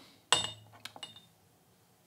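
Small white ceramic tasting cup set down on a wooden tea tray: one sharp clink with a brief high ring, then two lighter clicks.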